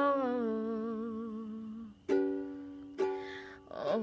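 Ukulele strummed in chords with a woman's singing voice holding a long, wavering note over the first half. Fresh strums ring out about two and three seconds in and fade away.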